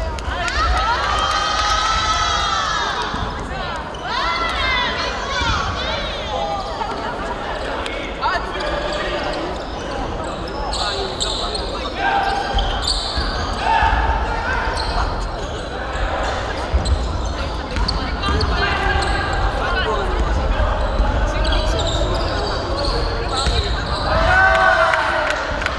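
Several women's voices talking and calling out, echoing in a large gym hall, with a basketball bouncing on the hardwood court now and then.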